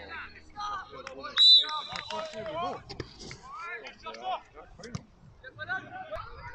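A referee's pea whistle blown once in a short warbling blast about a second and a half in, signalling the kick-off. Spectators and players are calling out around it.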